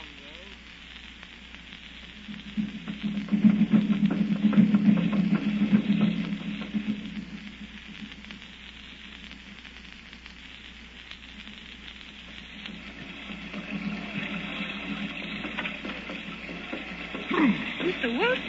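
Radio-drama sound effect of steady rain, a continuous hiss. A low swell rises about two seconds in and fades by six, and a second swell builds near the end.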